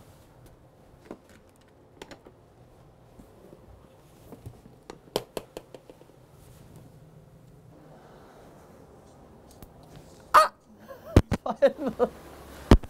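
Handling noise as a bedspread is pulled off a bed: soft fabric rustling with scattered light clicks and knocks. Near the end a loud sudden sound, then several sharp knocks.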